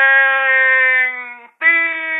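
A voice drawing out the word "mentir" in two long, steady held syllables, "meeen" then "tiiir". The second is a little higher in pitch and follows a short break.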